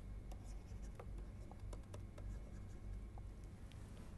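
Digital stylus ticking and scratching faintly on a tablet as a few words are handwritten, with a steady low hum underneath.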